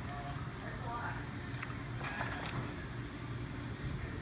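Quiet eating at a table: soft scattered clicks and rustles from paper sandwich wrappers and chewing, over a steady low room hum and faint murmured voices.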